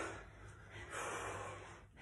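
A person breathing hard, winded from exercise: two heavy breaths, one at the start and one about a second in.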